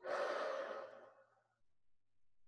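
A person's deep breath let out as an audible sigh, starting suddenly and fading away over about a second.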